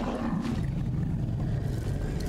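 A low, steady rumble from an animated film's soundtrack, with a faint wavering low drone.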